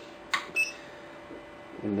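Push-knob on an HLLY TX-30S FM transmitter's front panel clicked in to confirm the audio-volume setting, followed at once by a short high beep from the unit.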